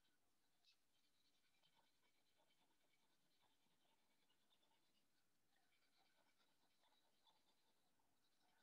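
Very faint scratching of colouring strokes on paper, barely above silence.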